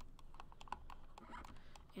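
Faint, irregular clicking of a computer mouse and keyboard being worked.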